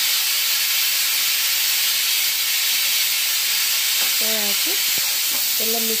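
A steady, even hiss, loudest in the high range, with a few short spoken sounds about four seconds in and near the end.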